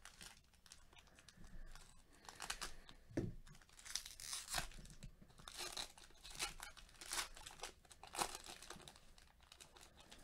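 Foil wrapper of a 2019 Panini Prizm football trading-card pack being torn open and crinkled by hand: an irregular run of crackling tears, busiest and loudest through the middle seconds.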